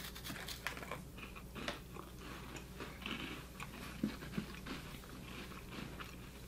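Faint, scattered crunching and chewing of crisp Loacker dark chocolate mini wafers being bitten and eaten by two people.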